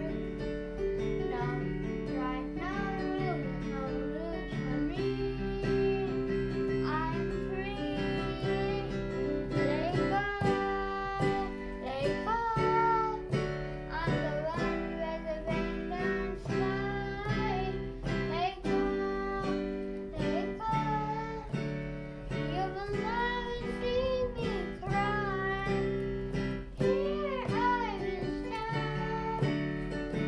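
A digital piano played four-hands, with held chords underneath and a melody on top, and a voice singing along over it.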